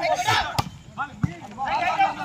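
A volleyball being struck by hand during a rally: a sharp smack a little past half a second in, then a duller thud a little past a second, amid shouting from players and onlookers.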